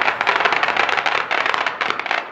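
Dense, rapid crackling of firecrackers going off, starting suddenly.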